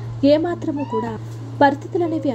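A woman's voice narrating continuously over a steady low hum.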